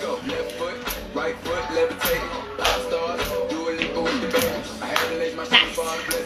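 Workout music playing with a steady beat.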